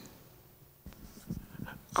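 Faint rustles and small knocks from a handheld wireless microphone being handled as it is passed from one speaker to the next, starting about a second in.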